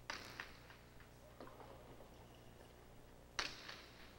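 Faint, sharp knocks of a jai alai pelota in play during a rally, striking the court walls and the players' wicker cestas: a louder knock just after the start and another near the end, with a few fainter ticks between.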